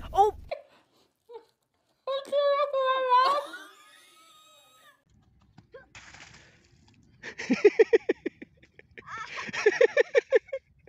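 Voices: one drawn-out vocal cry held steady and then rising, about two seconds in, and rapid bursts of laughter from about seven seconds on.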